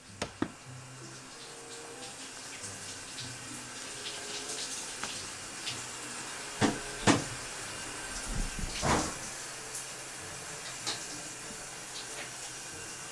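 A shower running behind the bathroom door, a steady hiss of water that grows louder as the door swings open. The door latch clicks twice at the start, and a few louder knocks and rustles come between about six and nine seconds in.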